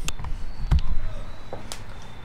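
Three light knocks or clicks, spaced roughly a second apart, over faint room noise.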